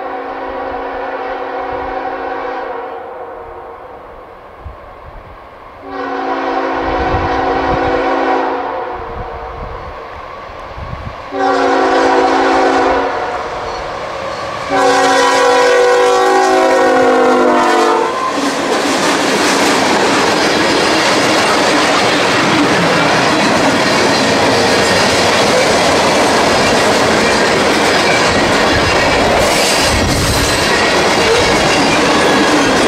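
Freight locomotive air horn sounding four blasts, long, long, short, long: the grade-crossing warning. After the last blast, about 18 seconds in, the freight train's cars roll past loudly with clickety-clack of wheels over rail joints.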